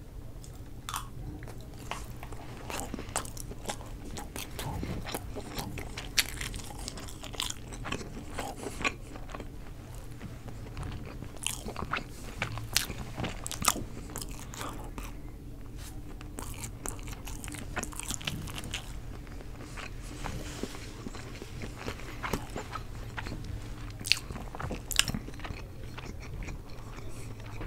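Close-miked chewing of a mouthful of chicken fajitas: irregular wet mouth clicks, smacks and soft crunches, going on throughout.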